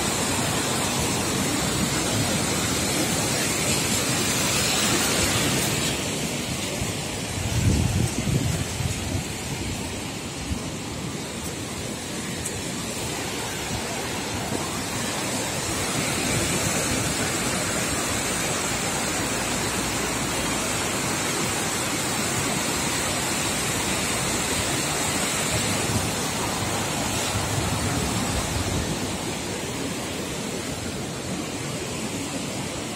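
Fast, swollen muddy river pouring over a low weir and through rapids: a loud, steady rush of water. A few low thumps come about eight seconds in.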